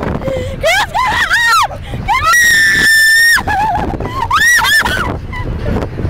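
People shrieking and screaming with laughter, in high rising-and-falling cries. About two seconds in comes one long, steady, high-pitched scream lasting over a second, with a low car-cabin rumble underneath.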